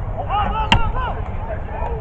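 Players shouting on the field, several short rising-and-falling calls over about the first second, with one sharp smack in the middle of them, over a steady low rumble.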